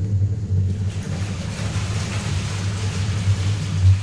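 A steady low mechanical hum, like an engine running, with a hiss building over it from about a second in.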